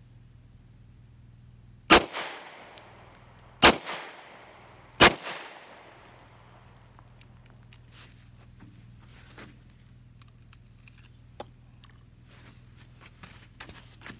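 Three pistol shots from a Smith & Wesson M&P, about a second and a half apart, each followed by a short echo; a few faint clicks of handling follow.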